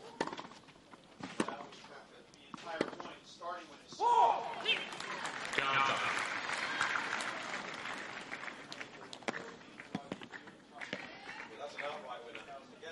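Tennis ball struck by racquets a few times in a rally on a clay court. About four seconds in, the stadium crowd responds with voices and then a spell of applause that fades away.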